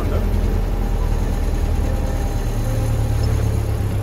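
Engine of a small backwater motorboat running steadily under way, a low drone whose note changes slightly a little past halfway.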